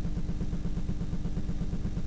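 Steady, fast, even low mechanical pulsing, about a dozen beats a second, with a faint steady hum above it.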